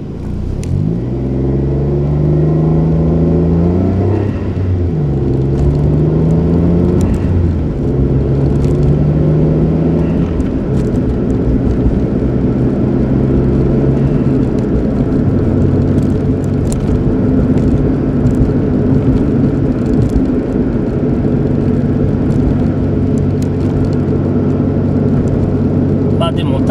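Car engine heard from inside the cabin, pulling away from a stop: its pitch climbs, drops and climbs again as it shifts up through the gears in the first ten seconds or so, then settles into a steady drone with road noise at cruising speed.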